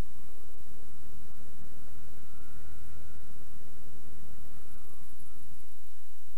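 Motorcycle engine running at low speed with rumble and wind noise on the rider's camera microphone. The low rumble is strongest in the middle and drops back near the end as the bike comes to a stop.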